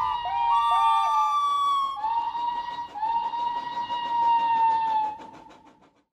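Steam locomotive whistles: a couple of short dipping toots, then several long held blasts. Under them a fast, even beat grows plain and fades away near the end.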